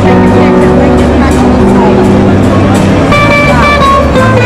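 Live country band music led by a nylon-string acoustic guitar, with held notes over a steady bass line.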